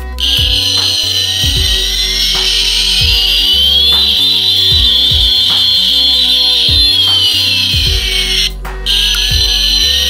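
Toy fighter jet's electronic jet-engine sound effect from its small speaker: a loud, hissing high whine with tones gliding up and down, cutting out briefly near the end and starting again. Background music with a steady beat plays underneath.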